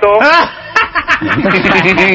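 Men's voices talking over one another, with a snickering chuckle among them.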